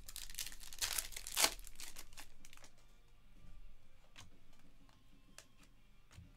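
Foil wrapper of a Panini Select basketball card pack crinkling and tearing as it is ripped open, loudest in the first two seconds, followed by softer rustling as the cards are handled.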